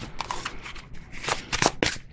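A deck of tarot cards being shuffled by hand: a string of short, crisp card flicks, coming closer together near the end.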